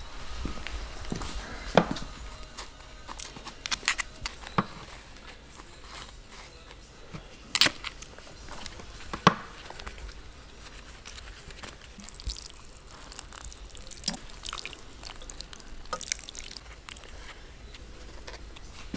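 Water sprinkling from a watering can's rose onto soil in a plastic seedling tray, pattering for several seconds in the second half. Scattered sharp knocks and clicks of handling come earlier and are the loudest sounds.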